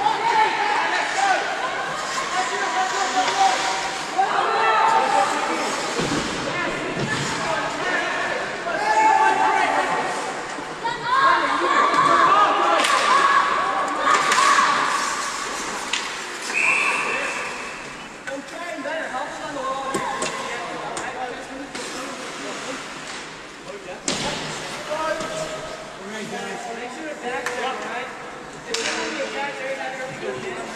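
Ice hockey game in an indoor rink: indistinct shouting and voices of players and spectators, with sharp knocks of puck and sticks against the boards. A short steady whistle blast sounds about halfway through.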